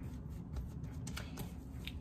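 Hands pressing and smoothing a rolled log of bread dough on a countertop: soft rubbing and brushing with a few light clicks and taps, most of them in the second half.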